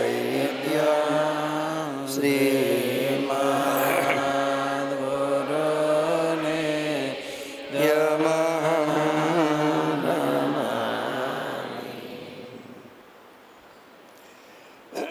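A man chanting a devotional mantra in long, drawn-out held notes, with short breaths about two and eight seconds in. The chant trails off into quiet near the end.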